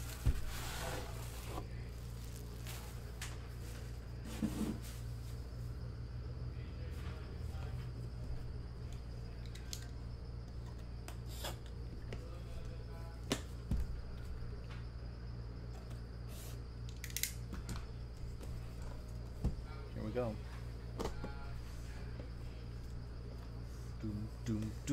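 Scattered light clicks and knocks from a hard briefcase-style trading-card box being handled and turned over on a table, over a steady low hum.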